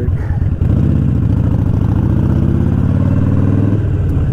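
Harley-Davidson Sportster XL1200's air-cooled V-twin through Vance & Hines pipes, pulling under throttle while riding. The engine note rises slowly from about half a second in, then the throttle eases off just before the end.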